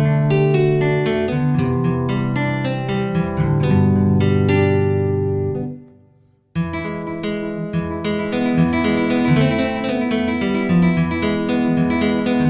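Synthesized nylon-string guitar from a Roland JV-1080 patch, triggered from an electric guitar through a Fishman TriplePlay MIDI pickup, playing a run of plucked single notes and chords. About halfway through the notes fade out to a short silence, then the playing starts again abruptly.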